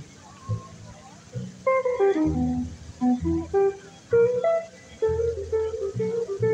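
Electric archtop jazz guitar playing a single-note instrumental passage with quick descending runs, over plucked upright double bass notes.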